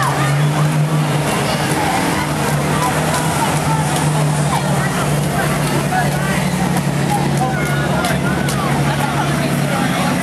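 Classic cars cruising slowly past at close range, their engines giving a steady low rumble, with onlookers' chatter over it.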